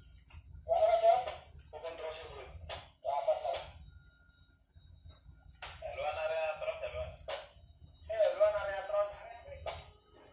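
A voice speaking in several short phrases, over a low steady rumble.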